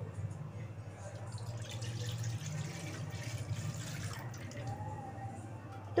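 Milk being poured into an aluminium kadhai: a steady liquid pour that grows fuller in the middle and tails off near the end.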